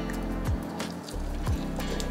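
Background music: a steady low bass line with a deep, falling bass thump about once a second.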